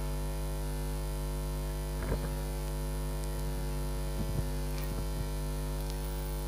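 Steady electrical mains hum with a stack of even overtones, coming through the church's microphone and loudspeaker system, with a few faint soft knocks about two seconds in and again after four seconds.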